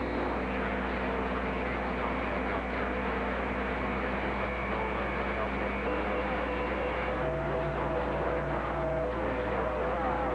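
Received signal from a Yaesu FT-2000D HF transceiver's speaker: steady static hiss with several whistling heterodyne tones, the tones shifting about seven seconds in. It is the sound of many stations transmitting over one another on a crowded channel, with a strong signal holding the S-meter near S9.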